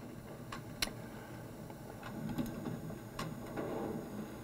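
A few faint, sharp computer mouse clicks over low room noise, the loudest just under a second in.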